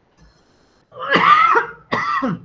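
A man coughing twice, hard. The first cough comes about a second in and the second follows right after it near the end.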